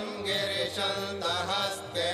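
Sanskrit mantras to Shiva chanted to a melody, the voice rising and falling over a steady drone.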